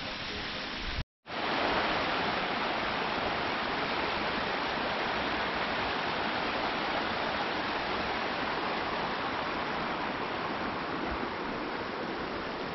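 Rushing water from a mountain stream pouring down over rock: a steady, even noise. It starts after a momentary silence about a second in.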